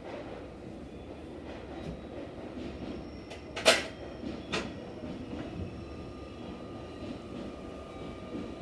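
Steady low hum of a stopped train's onboard equipment heard from inside the car. A sharp knock about three and a half seconds in is the loudest sound, followed by a lighter one a second later.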